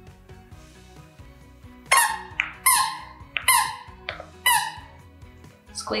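Squeaky plush dog toy squeaking in a quick run of four loud, sharp squeaks, a second or less apart, over background music.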